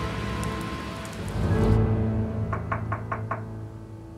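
Five quick knocks on a door about two and a half seconds in, over background music.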